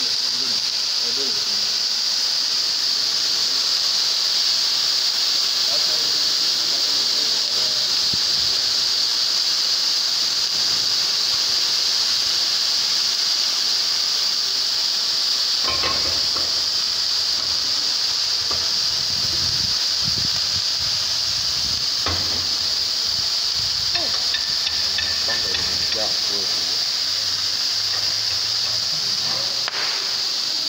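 Several CO2 fire extinguishers discharging at once: a loud, steady hiss of carbon dioxide gas escaping.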